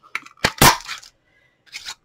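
A Flowers & Leaves craft punch is pressed through a scrap of black cardstock, giving a couple of small clicks and then a loud, sharp snap about half a second in as it cuts through. A short rustle of card follows near the end.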